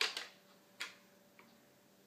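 A few light plastic clicks and taps of a shape piece knocking against a plastic shape-sorter drum as it is worked toward its hole: a pair of taps at the start, another just under a second in, and a faint one a little later.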